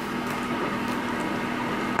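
Stiff pages of a hardcover picture book being turned by hand: a steady papery rustle and slide over a faint low hum.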